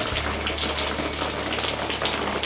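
Sprinkler spray of soapy wash water falling on the top of a solar-panel canopy and running off, heard from underneath as a steady hiss with fine patter.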